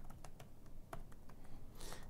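Typing on a computer keyboard: an uneven run of separate key clicks as a word is typed out.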